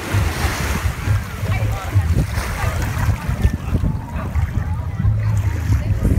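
Small waves washing onto a sandy beach, with gusts of wind buffeting the microphone in a low, uneven rumble. Faint voices sit underneath.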